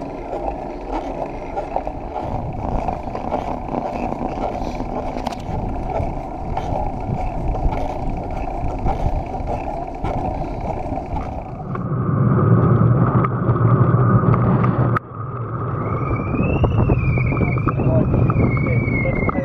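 Riding noise on a bike-mounted camera: wind rushing over the microphone and road-bike tyres on tarmac. About twelve seconds in, a louder low rumble takes over. It breaks off abruptly near fifteen seconds, and a wavering high tone follows.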